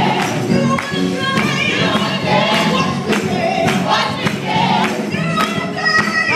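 Gospel choir of youth and young adult voices singing together over instrumental accompaniment, with a steady percussive beat running through.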